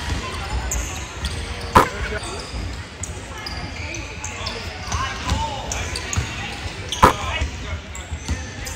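Basketball dribbling on a hardwood gym floor in a large echoing hall, with sneakers squeaking and players and spectators calling out. Two sharp loud bangs stand out, about two seconds in and again near the end.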